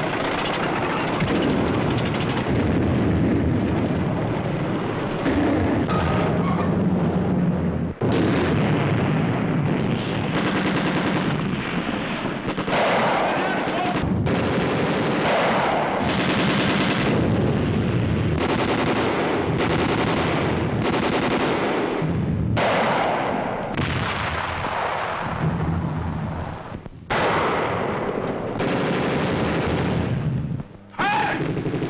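Dense, continuous battle gunfire of rifles and machine guns, with a few brief breaks, heard through the dull, narrow sound of an old film soundtrack.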